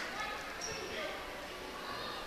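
Echoing gymnasium ambience during a stoppage in a basketball game: indistinct crowd and player chatter, with a few faint short squeaks and knocks from the court.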